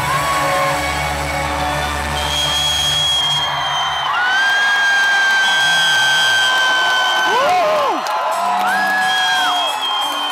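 Concert intro music through the hall's PA, with a low drone that fades out about four seconds in, over a crowd cheering; long, held high-pitched screams from fans ride above it.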